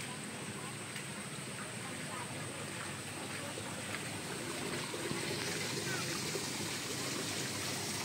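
Steady trickling of water: the nutrient solution running through the PVC channel pipes of a hydroponic tomato system, with a thin steady high tone above it.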